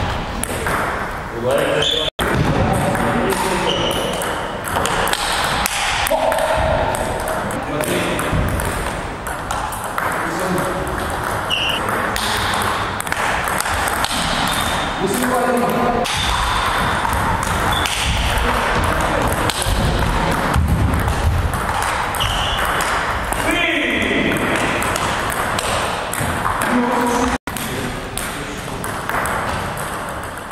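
Table tennis rallies: the celluloid ball clicking off rubber paddles and bouncing on the table, many quick strikes in a row, with short pauses between points.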